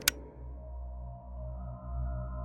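A sharp click at the very start, then a low, steady ambient drone with a few faint sustained tones above it: an eerie, sonar-like music bed.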